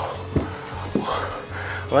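Background music with held notes over a low steady drone, and two or three short knocks.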